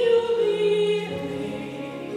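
A woman singing a solo into a microphone, holding long, steady notes that step to new pitches a couple of times.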